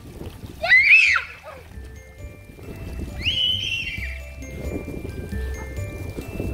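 A child's high squeal rising and falling about a second in, then a longer held squeal around three seconds in. Light background music with chiming tones comes in about two seconds in, with faint water splashing underneath.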